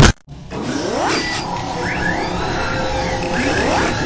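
Electronic intro sound effects: a sharp hit right at the start, then a dense noisy bed with a steady hum, crossed by several whooshing sweeps that rise in pitch.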